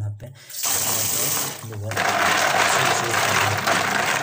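Tap water running into a plastic basin of snails being rinsed, splashing. It starts about half a second in and grows louder from about two seconds in.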